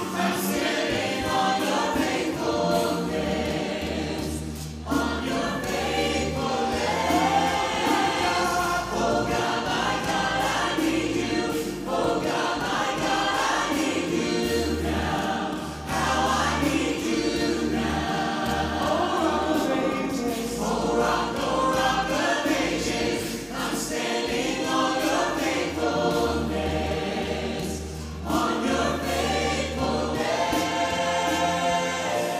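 A mixed group of male and female voices sings a worship song in close harmony through microphones. Sustained low notes sit beneath the sung phrases, with brief breaths between phrases.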